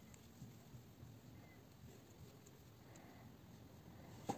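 Near silence: room tone with a few faint light ticks from the metal crochet hook and yarn being worked.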